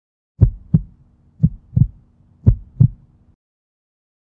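Heartbeat sound effect: three double thumps (lub-dub), about one a second, then it stops.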